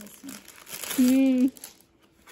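Thin plastic packaging crinkling as a folded top is drawn out of its clear poly pouch, fading out near the end. About halfway through, a short held vocal hum comes in over it and is the loudest sound.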